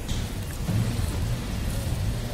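Steady low rumble of street traffic, with no clear single event standing out.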